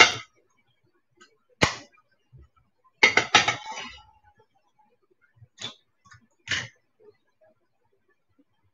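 Dishes and utensils handled on a kitchen counter: a series of sharp knocks and clinks, a quick cluster of three about three seconds in, and single ones before and after.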